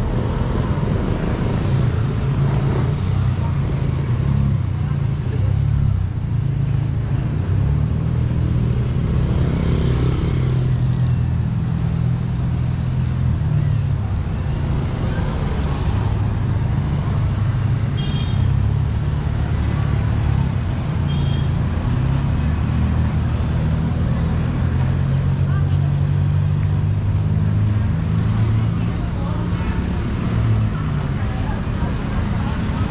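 Street traffic: car and motorcycle engines running close by, a steady low rumble that swells and shifts as vehicles pass.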